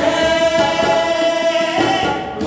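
Several male voices singing a long held note together over harmonium, with tabla; the pitch changes near the end.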